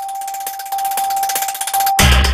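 Electronic logo sting of a TV news channel's end card. It starts suddenly, a steady high tone with a bright shimmering layer above it, and grows louder partway through.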